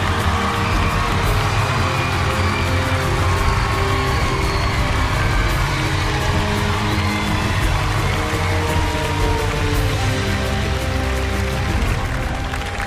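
Loud music playing steadily, over the noise of a large crowd cheering.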